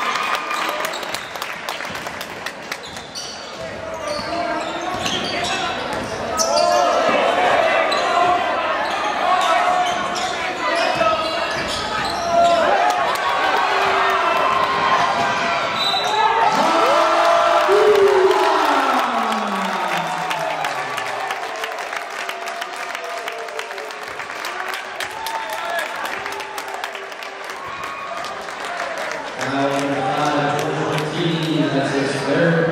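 Live high school basketball play in a gym: a ball bouncing on the hardwood, short sneaker squeaks and a murmur of crowd voices, all echoing in the hall. About two-thirds of the way through, a long tone slides steadily downward in pitch.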